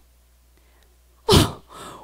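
A woman's short, loud, breathy vocal burst close to a handheld microphone. It comes after about a second of quiet room hum and trails off into a fainter voiced sound.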